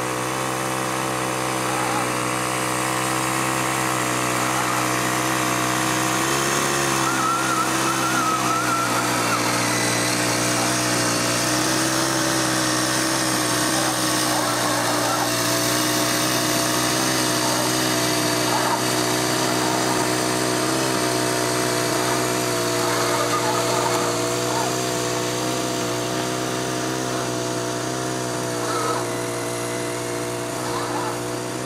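Small 15 cc four-stroke combustion engine of a 1:8 scale model tank running steadily while it tows a second model tank on a cable.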